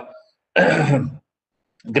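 A man clears his throat once, a short rasp about half a second in, with dead silence either side, heard over a video-call link.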